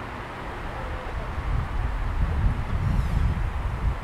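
Outdoor street ambience with wind rumbling on the microphone, growing louder and gusting irregularly in the second half. It cuts off suddenly at the end.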